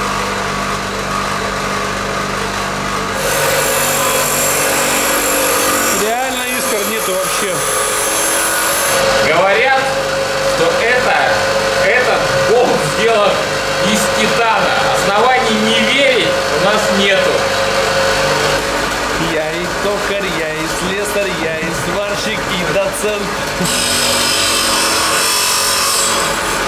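Electric bench grinder running with a steady hum while a bolt is held to the grinding wheel to grind it down. There are two spells of grinding: one from about three seconds in, lasting several seconds, and a shorter one near the end.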